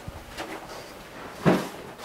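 An interior door thumps shut once, loudly, about one and a half seconds in, with a few lighter knocks before it.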